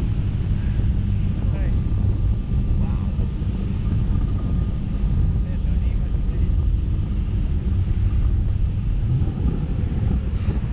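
Wind buffeting the microphone of a camera mounted on a parasail's tow bar as it is towed aloft: a steady low rumble, with a faint thin tone in the middle seconds.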